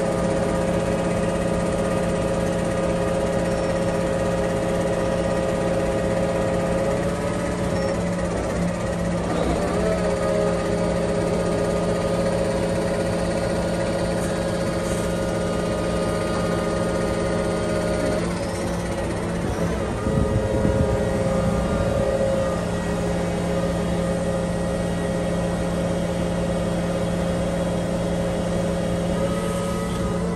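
Large mobile crane's diesel engine running with a steady hum. Its note shifts twice, about nine seconds in and again near the middle, with a short louder surge just after.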